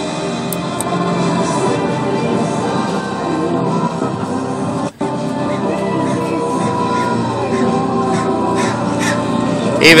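Music from an FM radio station playing through a vintage Marantz 2250B stereo receiver and its speakers. The sound drops out for an instant about halfway through.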